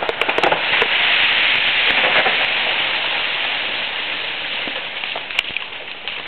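Ice-coated tree limbs cracking and breaking. A few sharp snaps give way to a loud, crackling crash of ice and branches that peaks about a second in and slowly dies away over about five seconds. A few more cracks come near the end.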